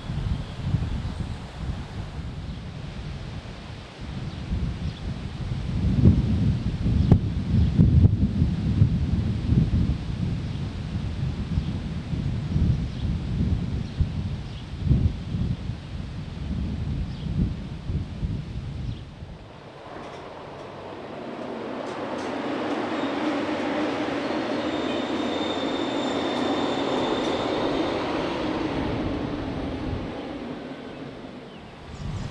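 Wind buffeting the microphone with a gusty low rumble, strongest a third of the way in. About two-thirds of the way through the gusts die down, and a steady mechanical drone with a faint high whine swells in and holds.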